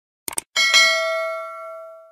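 Subscribe-button sound effect: a quick double mouse click, then a bright notification-bell ding that rings out and fades over about a second and a half.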